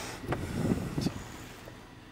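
A car driving past, its engine and tyre noise fading away as it goes.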